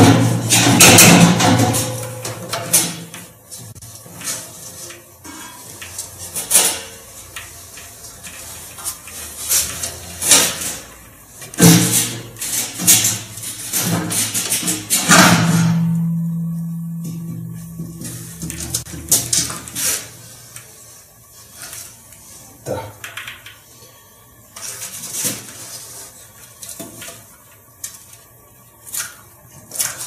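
Knocks, clatter and scraping of plastic and metal as the tank of an Ardo washing machine is worked apart and its rear half is pulled out of the cabinet. The knocks come thickest in the first half, and a low, drawn-out scrape sounds about halfway through.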